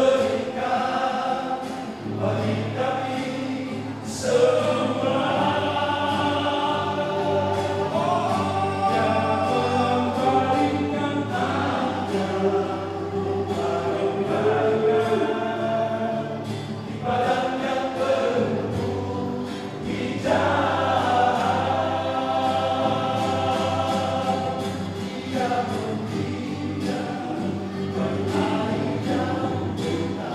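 Male vocal group singing a gospel song in harmony, several men's voices together in long phrases with short breaks between them.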